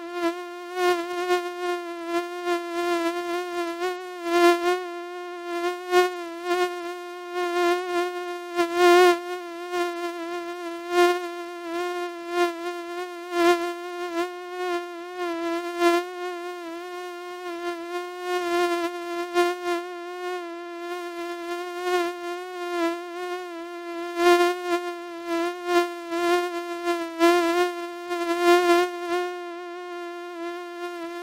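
Common house mosquito (Culex pipiens) whining in flight: one steady, buzzy high note that wavers slightly in pitch and swells louder and softer many times over.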